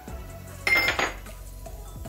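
A small ceramic dish clinks once, sharply, about two-thirds of a second in, with a short high ring. Quiet background music runs underneath.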